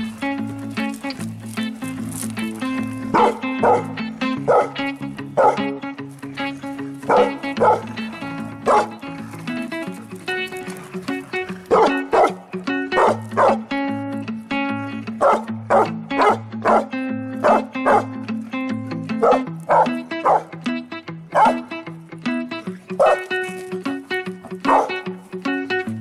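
Background music with steady held low notes, over dogs barking in short, repeated bursts as they play tug-of-war over a toy.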